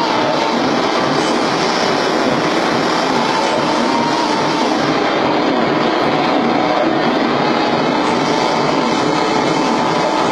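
Continuous harsh wall of amplified noise from a live experimental noise performance, dense and unbroken at an even, loud level, with a faint steady hum of tones under the roar.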